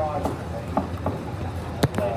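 Case steam traction engine moving slowly past, with a low steady rumble and a few sharp knocks, the loudest near the end.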